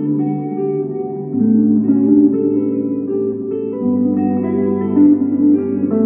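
Epiphone electric guitar played through a Marshall solid-state amp: layered guitar loops from a loop pedal with an improvised line over them. The underlying chord changes twice, about one and a half and four seconds in.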